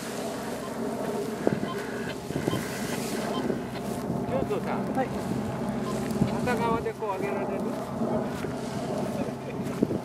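Steady drone of a paramotor engine running, with wind noise on the microphone.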